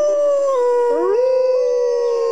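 Wolves howling: long, held howls from at least two animals overlapping, a second voice sliding up to join the first about a second in.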